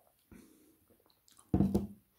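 Drinking water from a glass: a soft swallow early on, then a loud, short, low sound about a second and a half in as the drink ends and the glass comes down.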